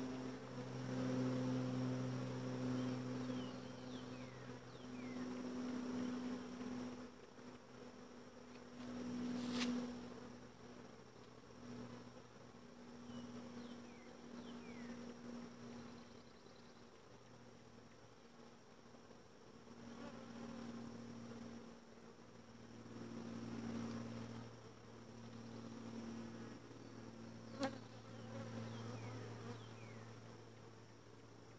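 Honeybees buzzing around an open hive, a steady hum that swells and fades. Two sharp clicks break in, one about a third of the way through and one near the end.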